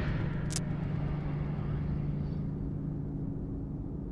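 Low drone of the intro's sound design, fading slowly after a hit, with one short high click about half a second in.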